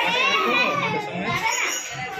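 A group of children talking and calling out at once, several high voices overlapping.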